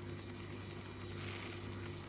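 Pause in the talk: faint room tone, a steady low hum under light hiss.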